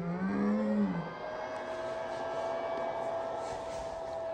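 Powered air-purifying respirator blower of a 3M Speedglas welding helmet, just switched on. Its motor spins up with a rising whine, then settles into a steady whir with a faint steady tone as it pushes filtered air up the hose into the helmet.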